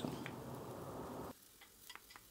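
Faint rustling of chopped onion being tipped from a plate into an empty pot, stopping abruptly about a second in, with a couple of faint ticks near the end.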